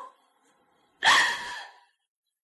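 A woman's sharp, breathy crying gasp, a sob drawn in about a second in and fading within about half a second, as she weeps in grief.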